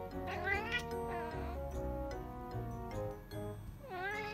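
Calico kitten chattering at something outside the window: short, rising chirp-like calls, a couple in the first second and another near the end, the call house cats are said to make on spotting birds or insects. Background music plays underneath.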